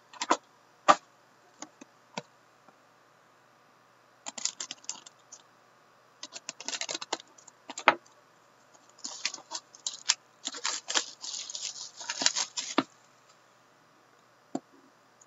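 Clear plastic shrink-wrap being torn and peeled off a sealed cardboard card box, crinkling and crackling in bursts that are densest near the end. Scattered clicks and taps come from the box being handled.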